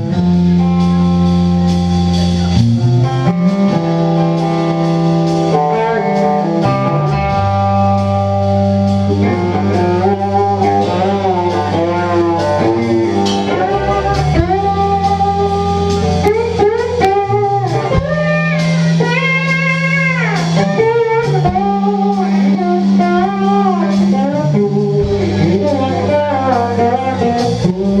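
Live blues-rock band playing an instrumental passage: electric guitar playing lead lines with string bends over electric bass and drum kit.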